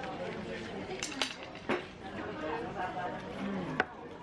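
Café dining-room sound: other diners talking, with several sharp clinks of dishes and cutlery, the sharpest just before the end.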